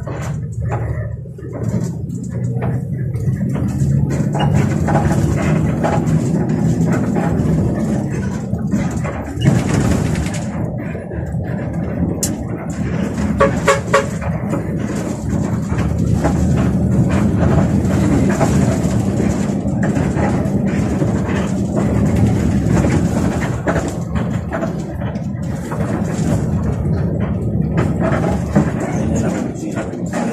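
Bus engine and road noise heard inside the cabin while driving, steady throughout. A few short pitched tones sound about halfway through.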